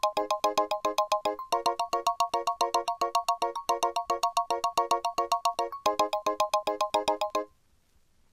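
An FM synthesizer percussion part (FM7 plug-in, DX-style sound) playing a fast, even run of short pitched notes, about eight a second, on its own with no drums or other parts. It cuts off suddenly about seven and a half seconds in as playback stops.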